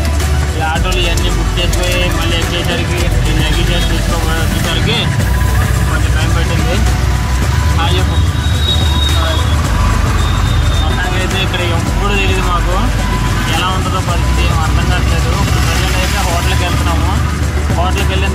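Auto-rickshaw ride heard from inside the open passenger cabin: the small engine and road noise make a loud, steady low rumble, with voices and music mixed in over it.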